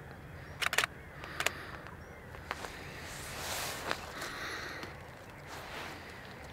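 DSLR camera shutter firing a few times: short sharp clicks, a close pair just under a second in and single ones later. A soft rustle swells in the middle.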